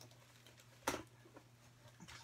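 A knife cutting into a cardboard package: one short, sharp scrape about a second in, with faint handling sounds around it.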